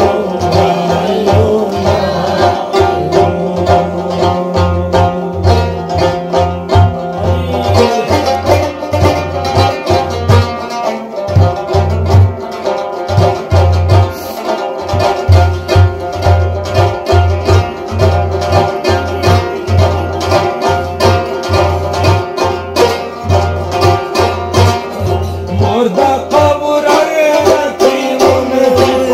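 Instrumental devotional music: a plucked string instrument playing a melody over a steady rhythm of deep frame-drum (daf) strokes.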